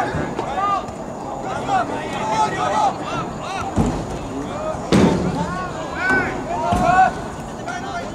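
Players shouting short calls to one another during soccer play, several voices overlapping, with a few sharp thumps, the loudest about four and five seconds in.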